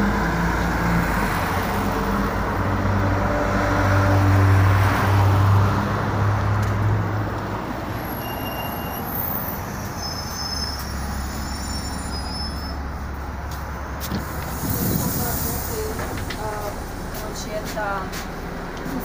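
City bus pulling up with its diesel engine running, loudest as it arrives. Then a few short electronic beeps and, about 15 s in, a brief burst of air hiss from the bus's pneumatics, over the engine's lower rumble.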